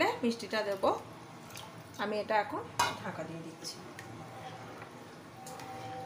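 Steel utensils clinking against a pan as a steel lid is handled and a ladle stirs rice cooking in liquid, with a couple of sharp metallic clicks in the middle. A voice speaks briefly in the first half.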